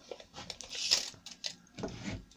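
Beech boards being handled on a bench and a steel tape measure being pulled out and hooked over a board's end: a run of light clicks and knocks, with a short scraping hiss about a second in.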